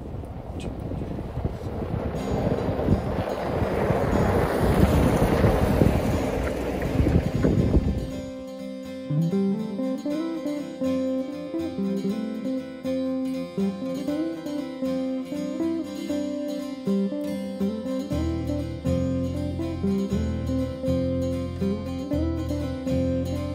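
A Jeep towing a boat trailer drives by on a snowy road: engine and tyre noise builds to a peak and then cuts off abruptly about eight seconds in. From then on, plucked acoustic guitar music plays, with a bass line joining near the end.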